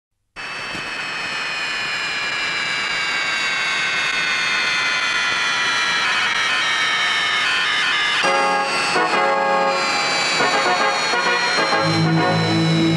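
Cartoon airliner's jet engines: a rushing drone with a high whine that slowly falls in pitch, starting suddenly a moment in. About eight seconds in, held orchestral chords come in over it.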